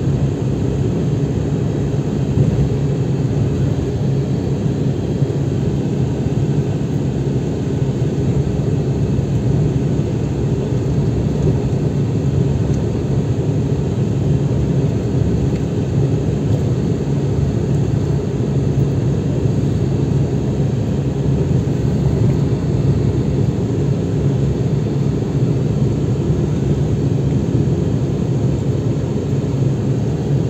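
Road vehicle travelling at a steady speed, heard from inside the cabin: an even, low drone of engine and tyre noise with no marked changes.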